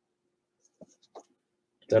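Quiet room tone with a faint steady hum and two faint short clicks about a second in, then a man's voice starts speaking at the very end.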